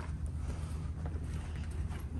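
Steady low rumble of background noise, with no voices and no distinct events.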